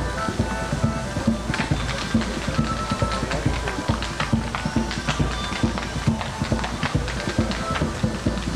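Irish dance music playing, with a quick run of sharp taps and clicks from Irish step dancers' shoes striking the pavement in time.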